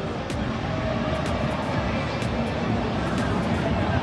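Steady stadium crowd noise, an even wash of many distant voices, with faint music underneath.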